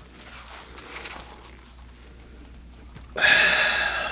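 A person breathing softly, then a loud, sharp breath out about three seconds in that lasts about a second, as he pulls a resistance band overhead into a stretch.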